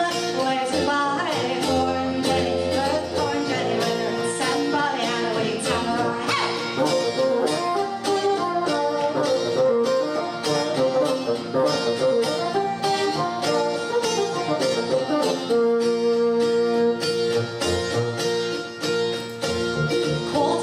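Instrumental break in a live folk song: a bassoon plays the melody over a strummed acoustic guitar, holding one long note about three-quarters of the way through.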